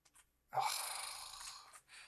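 A man's short "oh" trailing into a long breathy sigh that fades away over about a second, a reaction to a slip of the computer mouse.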